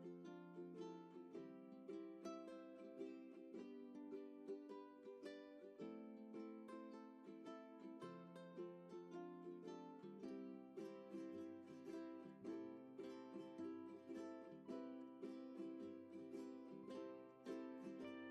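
Quiet background music of plucked strings, a light picked melody of quick notes, with a lower bass part joining about ten seconds in.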